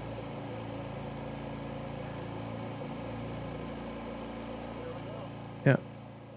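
Harbor Freight Predator 9500 inverter generators running steadily in parallel, an even engine hum, carrying the house's load just after an air-conditioner compressor has started.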